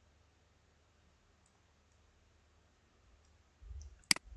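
Near silence over a low steady hum, with a few faint computer mouse clicks and a short low thump near the end.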